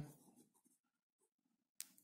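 Faint pen writing on notebook paper, with one sharp click near the end.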